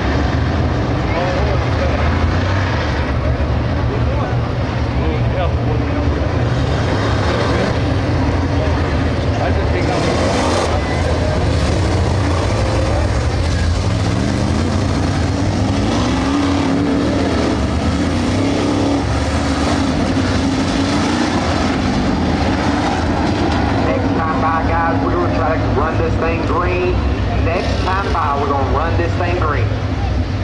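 A pack of dirt late model race cars with GM 602 crate V8 engines running around the track at pace speed. The engines make a steady drone whose pitch rises and falls as the cars pass.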